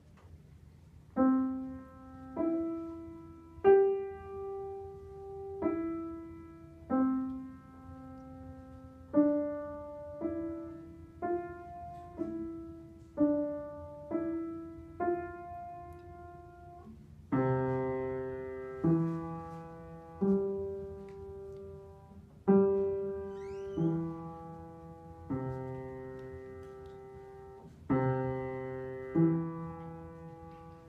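Upright piano played slowly by a young beginner: a simple tune of single notes, each left to ring and fade, about one a second. About halfway through, lower notes join beneath the melody, so both hands play together.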